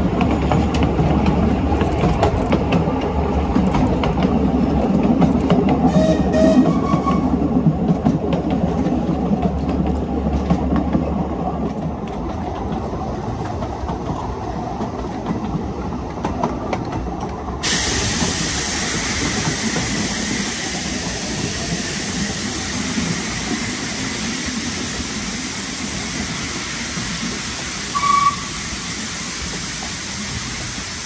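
Narrow-gauge passenger train running along the track, heard from inside a carriage: a steady rumble of wheels on rail with fine rapid clicking, turning brighter and hissier a little past halfway. A brief high squeak comes near the end.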